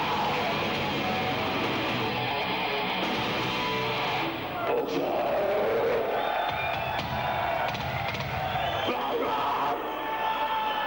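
A live melodic death metal band plays distorted electric guitars, bass and drums with shouted vocals. The dense full-band sound thins out about four seconds in.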